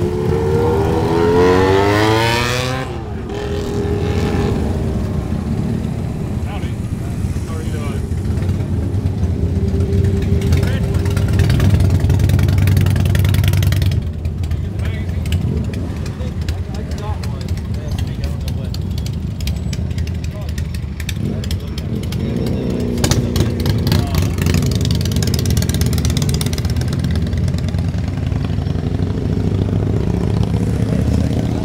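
A motorcycle engine revs up, rising in pitch over the first three seconds. Then comes a steady low rumble of running engines, with voices in the background.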